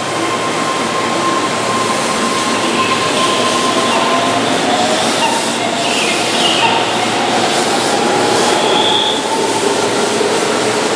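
Keihan electric commuter train pulling out of a station platform, its traction motors giving a whine that slowly rises in pitch as it gathers speed, over the steady rumble of the cars.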